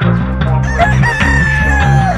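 A gamefowl rooster crowing once: one long call that starts about two-thirds of a second in, holds its pitch, and drops away at the end. Rock music with a bass line plays under it.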